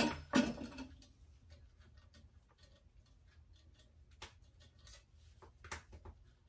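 Light metal clicks and ticks from fitting a cutter into the end of a steel hollowing bar, with two louder clinks at the start and a few sharper clicks near the end.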